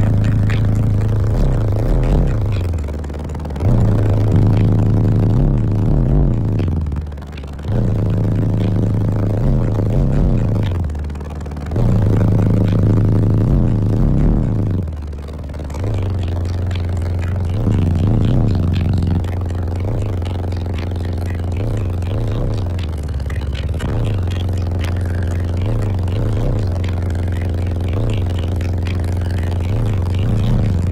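Bass-heavy music played loud through a car audio system of four Skar ZVX 15-inch subwoofers in a sixth-order enclosure. Long held low bass notes alternate with sliding bass drops.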